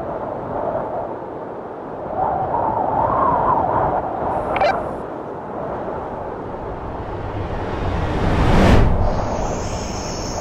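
Edited intro sound effects: a steady wind-like rush, a brief sharp hit with a high ring about halfway, then a swelling whoosh that ends in a low boom about eight and a half seconds in. High, steady insect buzzing starts near the end.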